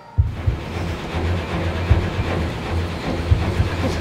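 A mobile phone vibrating on a hard tabletop against another phone: a low buzzing rattle that comes and goes in pulses, with sharp clicks.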